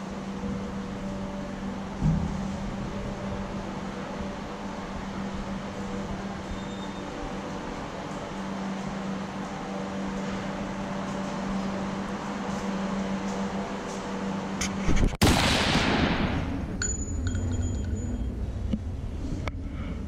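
A steady low mechanical hum, with a single knock about two seconds in. About fifteen seconds in, a sudden loud rush of noise breaks in and fades over a second or two.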